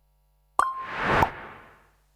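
Short animated-logo sting sound effect: a sudden start with a brief tone about half a second in, a whoosh that swells to a sharp hit, then fades away.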